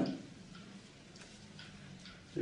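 Quiet room tone in a pause between words: a faint steady hum with a few faint small clicks.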